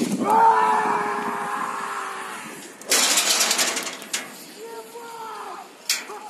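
A man's long, held scream as he leaps on a rope jump, sliding slightly down in pitch. About three seconds in comes a loud rush of wind noise, then a shorter shout.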